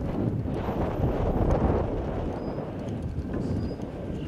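Wind buffeting an outdoor microphone: a low, uneven rushing noise.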